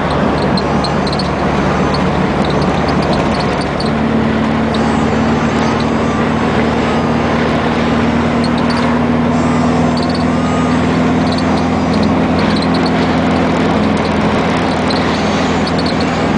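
Custom Volkswagen Super Beetle rat rod driving along at road speed, heard from inside the car: a steady engine hum under a constant rush of wind and road noise, with a new steady engine tone joining about four seconds in.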